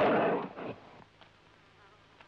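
A charging bull: a loud, rough burst of noise right at the start, dying away within about a second, leaving only faint background.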